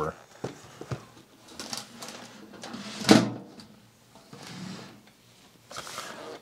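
A large metal tin chest is handled with a few light clicks, and its lid is shut with one loud knock about three seconds in.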